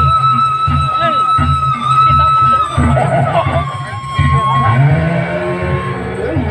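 Traditional presean accompaniment music. A wind instrument holds a long high note for about two and a half seconds, then a shorter, lower note, over a steady drumbeat, with voices mixed in.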